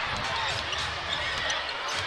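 Basketball arena game sound: a steady crowd murmur, with a basketball bouncing on the hardwood court.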